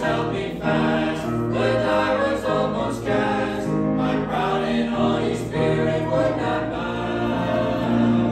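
Small mixed church choir of men and women singing a gospel hymn in harmony, holding chords that change every second or so.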